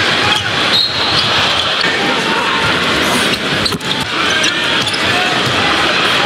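A basketball being dribbled on an arena's hardwood court over steady, loud crowd noise.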